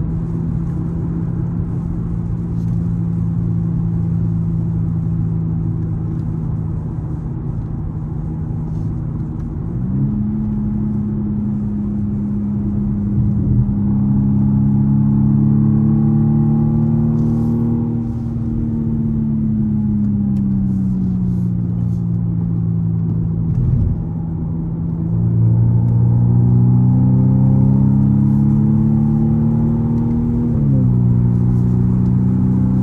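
Car engine heard from inside the cabin while driving a wet circuit. It holds a steady drone, then jumps up in pitch about a third of the way in. The pitch climbs and eases off through the middle, then rises again under acceleration near the end.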